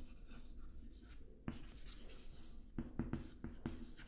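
Chalk writing on a chalkboard: faint scratching strokes as letters are written, with several sharper taps of the chalk in the second half.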